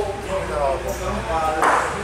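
People talking. A man's voice is heard in short phrases with no clear words, and there is a brief sharper sound near the end.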